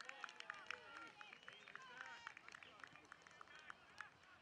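Faint outdoor ambience: distant voices mixed with many short, high chirps.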